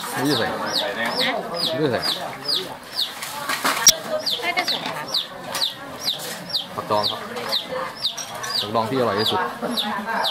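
A bird calling in a steady run of short, high, falling chirps, about two to three a second, with people talking in the background.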